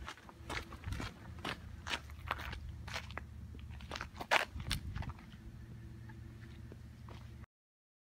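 Footsteps crunching on a gritty gravel road shoulder, about two a second, over a low steady hum. The steps stop about five seconds in, and the sound cuts off suddenly near the end.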